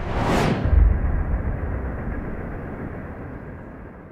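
Title-card sound effect: a sudden whoosh sweeping down in pitch into a deep boom just under a second in, followed by a long low rumble that slowly fades.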